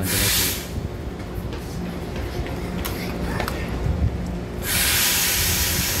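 A Taiwan Railway EMU900 electric commuter train pulling out with a low running rumble. There are two loud bursts of compressed-air hiss: a short one at the start and a longer one from near the end.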